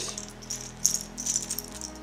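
Small plastic XT60 connectors clicking and rattling together as they are picked up off a concrete floor. There are light clicks about half a second in and a cluster between one and one and a half seconds, over background music.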